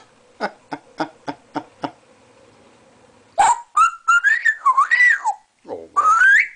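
African grey parrot making a run of sharp clicks, about three a second, then after a short pause whistling: a wavering whistle that glides up and down, broken into short stuttering notes at its start.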